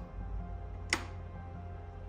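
A single sharp click of a wall light switch being pressed, a little under a second in. Quiet background music with steady held tones plays under it.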